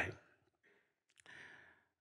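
A man's faint breath taken in through a head-worn microphone, with a couple of soft mouth clicks, in a short pause between spoken words.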